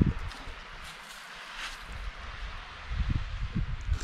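A sharp knock as the camera is bumped and swung round, then wind rumble and handling noise on the microphone, with some low thumps near the end.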